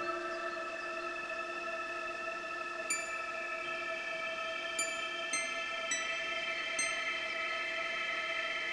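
Slow, quiet classical guitar music: earlier notes are left ringing, and five soft single high notes are plucked one at a time in the second half.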